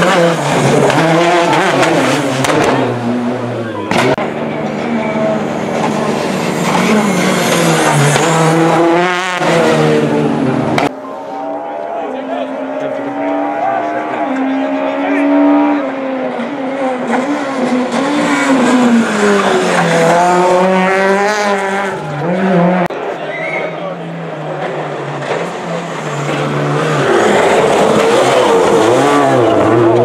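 Peugeot 208 rally cars running one after another on a tarmac stage, each engine revving up and down as the car brakes, shifts and accelerates through a bend. The sound breaks off abruptly about four and eleven seconds in as one car gives way to the next.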